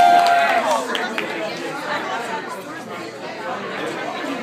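Bar audience chatter, many voices talking over one another. A long held whoop ends with a falling pitch about half a second in.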